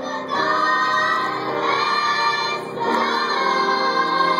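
Children's choir singing together with a young girl soloist on a microphone, in long held phrases; a new phrase swells in about a third of a second in and another just before three seconds.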